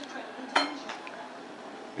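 A ladle clinks once against a stoneware slow-cooker crock about half a second in, with the ring hanging briefly, followed by a couple of faint knocks.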